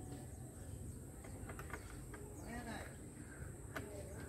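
Faint outdoor background with a few scattered light clicks and a brief, faint distant voice a little past the middle.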